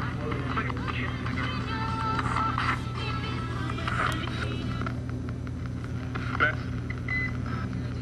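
A ghost-hunting radio scanner (spirit box) sweeping through stations. Choppy snatches of radio voices and tones change every fraction of a second over a steady hum, with quick clicks as it jumps. About six seconds in, a fragment is taken for a spirit's reply, heard as "bet".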